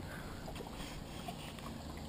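Faint, steady swish of river water moving along the wooden hull of a Ness yawl under sail, with a low rumble underneath.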